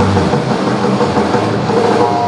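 Live rock band playing a loud, dense instrumental passage of the song without vocals: distorted electric guitars over bass and drums, with a held low note.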